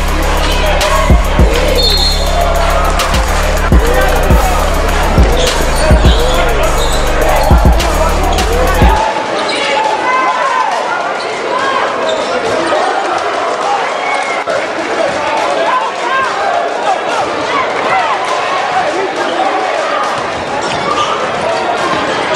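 Basketball bouncing on a hardwood gym floor, several bounces a couple of seconds apart over a steady low hum. About nine seconds in, the sound cuts abruptly to the hubbub of a gym crowd talking.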